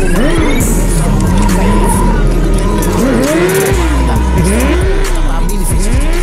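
Motorcycle engines revving up and down again and again during smoky rear-wheel burnouts, mixed with a hip-hop beat that has a steady low bass.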